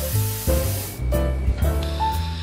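Espresso machine steam wand hissing over background music; the hiss cuts off about a second in, leaving the music.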